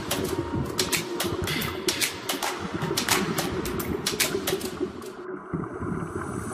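Air bubbling and gurgling out of a surface-supplied diving helmet, heard underwater, with irregular crackling clicks. The high crackle drops out about five seconds in.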